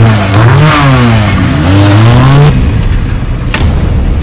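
Motorcycle engine revving, its pitch rising and falling in several long swells, then cutting off abruptly about two and a half seconds in. A lower, rougher rumble with a few sharp ticks follows.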